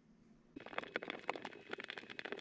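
Felt-tip marker writing on bare plywood: a faint, irregular run of small scratchy clicks and scrapes, starting about half a second in.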